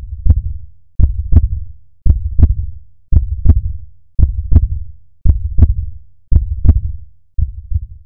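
Heartbeat sound effect: a slow, steady lub-dub, about eight double beats at roughly one a second.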